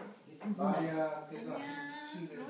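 Speech: a playful spoken greeting in Korean, 'ya, annyeong' ('hey, hi'), drawn out between about half a second and one and a half seconds in.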